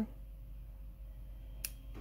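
Quiet room tone with a steady low hum, and a single short, sharp click about one and a half seconds in.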